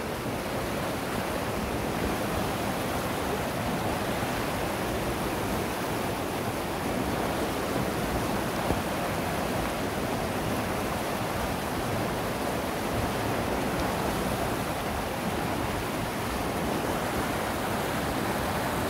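Swollen river in spate, running high and fast after days of persistent rain: a steady rush of churning white water.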